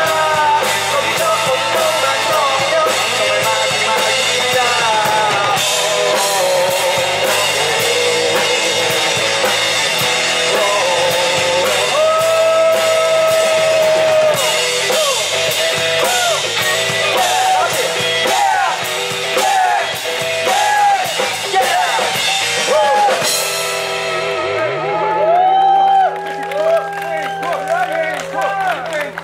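Live rock band: a man singing lead over a drum kit, electric bass and acoustic guitar. About 23 seconds in, the drums and cymbals stop and the song ends on a held low note with a few sung calls over it.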